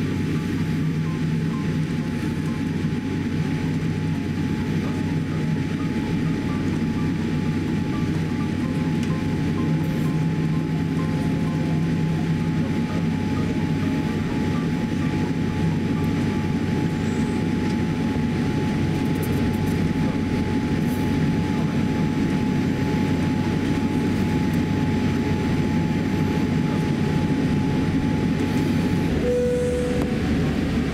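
Steady low rumble of a Boeing 787-8 airliner's cabin during taxi, engines at low thrust, with a faint steady whine running under it. Near the end a single clear cabin chime sounds, the start of a series of chimes.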